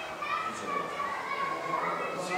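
Several children's voices chattering and calling at once, overlapping.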